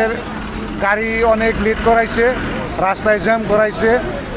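Speech: a man talking into a microphone, with a steady low rumble of street noise behind.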